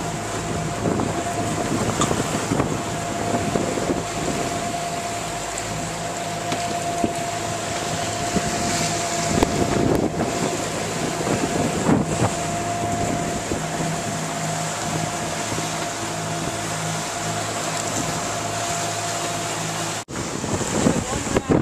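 Wind buffeting the microphone and water rushing past the hull of a catamaran under way in choppy seas, over a steady low hum and a constant thin whine.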